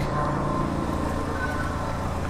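Steady low mechanical hum with a faint high tone over it, at an even level.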